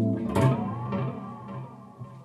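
Electric guitar played through a Zoom MS-50G multi-effects pedal set to its Dist+ distortion model: a held distorted chord gives way to a sharp pick attack about a third of a second in, which rings on and fades away.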